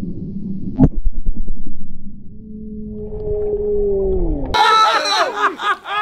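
Muffled underwater sound from a dry ice bottle bomb on a pool floor: fizzing and crackling bubbles with a sharp crack about a second in, then a low droning tone that slides down and stops. About four and a half seconds in the sound cuts to open air and loud laughter.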